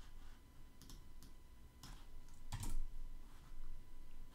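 A few scattered keystrokes and clicks on a computer keyboard and mouse, the loudest about two and a half seconds in.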